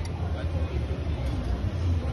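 A steady low rumble, with faint voices.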